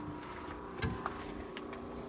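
Two light knocks a little under a second in, the first the louder, over a faint steady hum.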